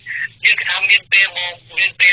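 Speech only: a news reader talking continuously in Khmer, with a thin, narrow sound like a phone line.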